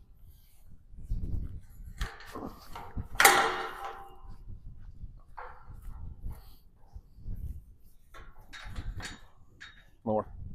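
Clanks from a steel tube farm gate being worked on, the loudest a ringing metal clang about three seconds in, over wind rumbling on the microphone.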